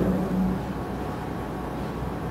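A man's voice trails off at the start, followed by a pause filled with a steady low hum and room noise picked up through the microphone.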